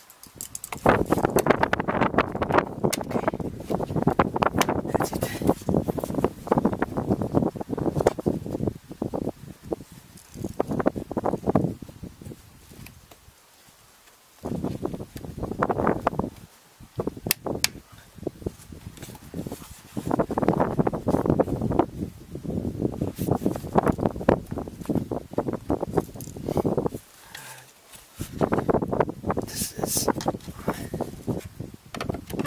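Hands working a BMW E46's plastic air filter housing lid and filter: rattling, scraping and clicking of hard plastic in repeated bursts with short pauses. The lid will not seat because the filter is not sitting level in the box.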